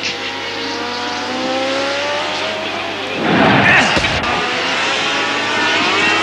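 Racing sidecar outfits' engines running at high revs on the circuit, pitch holding high and rising slightly. About three seconds in, outfits pass close by with a louder rush and falling pitch.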